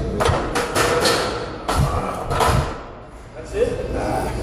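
Loaded barbell being set back into a steel power rack after a squat set, with several sharp metal clanks of bar and plates against the rack in the first couple of seconds. A man's voice is heard over it.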